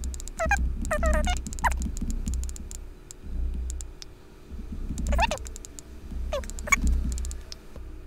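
A woman's voice played back at double speed, raised in pitch and too fast to make out, in a few short bursts over a low hum, with scattered light ticks.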